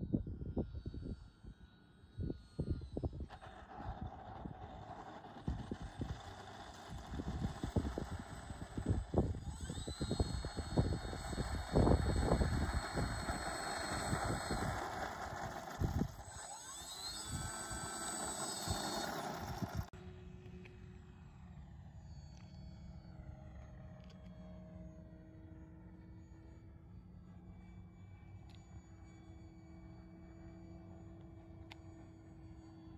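Whine of a radio-controlled foam-board model plane's electric motor and propeller, rising in pitch as the throttle is opened, with wind gusts buffeting the microphone. About two-thirds of the way through it drops abruptly to a fainter, steadier hum.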